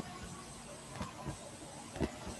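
Faint background hiss from an open video-call microphone, with a thin steady high whine and a soft click about halfway through.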